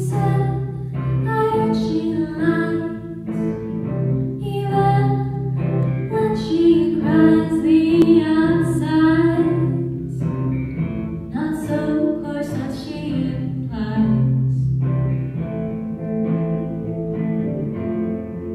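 Live band performing a song: a woman sings phrases with a wavering pitch over electric guitar, bass and keyboard, which hold sustained low notes beneath the voice.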